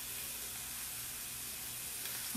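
Steady sizzle of cod fillets searing in hot olive oil in a frying pan.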